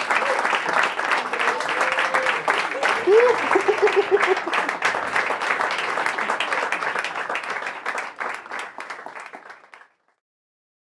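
Audience applauding and cheering, with a voice whooping about three seconds in. The applause fades out near the end.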